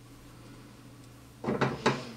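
A short cluster of knocks and clatter from things being handled on a wooden tabletop, about one and a half seconds in, over a faint steady hum.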